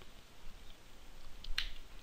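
Faint steady hiss from a desk microphone, with one short, sharp sound about a second and a half in.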